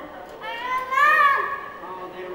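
A young child's high-pitched vocal cry, about a second long, rising and then falling in pitch.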